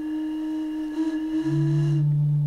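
Sustained blown tones from homemade wind instruments: a steady mid-pitched tone is held throughout, and a lower tone about an octave down enters about three-quarters of the way through, with some breathy hiss.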